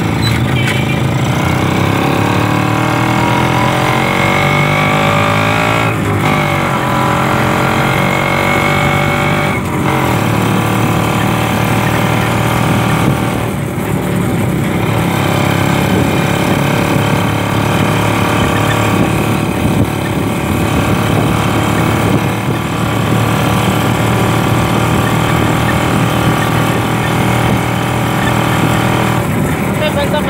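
Kawasaki HD3 motorcycle of a sidecar tricycle under way, heard from the sidecar: the engine rises in pitch as it pulls up through the gears, with short breaks at the shifts about 6 and 10 seconds in, then runs at a steadier cruising speed.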